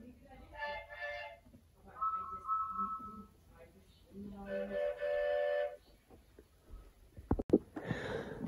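Recorded cartoon steam-engine whistle sounds played back one after another: two short toots, then a higher two-note whistle, then a lower, longer whistle, with a few clicks near the end.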